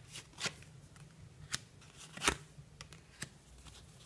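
Tarot cards being dealt from the deck and laid down on a wooden table: a handful of short, sharp card snaps, the loudest a little past halfway.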